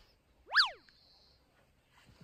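Comedy sound effect, a cartoon-style boing: one quick whistle-like pitch glide that shoots up and drops straight back down, about half a second in.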